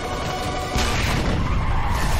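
Tense background music, then about three-quarters of a second in a loud explosion breaks in and goes on as a long rushing roar.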